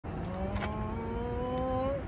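A motor running with a steady hum that slowly rises in pitch, then cuts off suddenly.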